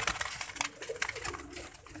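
Domestic pigeons cooing faintly and low in their loft, with scattered short clicks and rustles.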